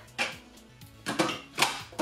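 The hard-plastic lid of a Nicer Dicer Chef cutting container, fitted with a spring-loaded plunger, being set on and snapping into place: a few sharp plastic clicks and knocks, the loudest about one and a half seconds in.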